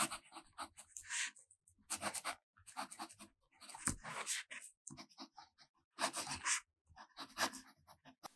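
A fountain pen nib scratching across 20 lb copy paper as cursive words are written, in short bursts of strokes with brief pauses between words.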